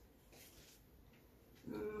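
Near silence: faint room tone, with a woman starting to speak near the end.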